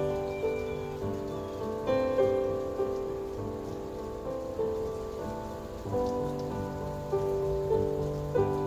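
A small handbell choir playing a slow melody: each bell is struck and rings on, overlapping the next, with a new note every half second to second and a half and a held low note beneath.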